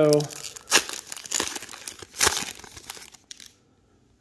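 A trading-card pack wrapper being torn open and crinkled by hand: a run of irregular sharp crackles that thins out and stops about three and a half seconds in.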